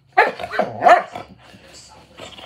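German shorthaired pointer vocalizing at its sister in play: a quick run of three or four short, pitched bark-like yowls in the first second, then quieter.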